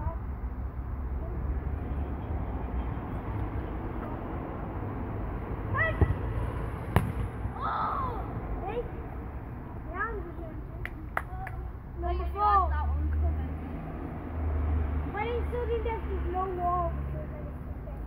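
Outdoor wind rumbling on the microphone, with children's distant shouts and calls coming and going. A few sharp knocks stand out near the middle.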